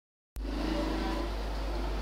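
A steady low hum with faint background noise, starting about a third of a second in after silence.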